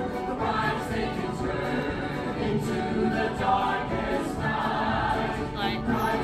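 A stage-musical cast singing together as a choir, with instrumental accompaniment, in a live theatre performance.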